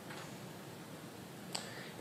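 Quiet room tone with a single faint click about one and a half seconds in.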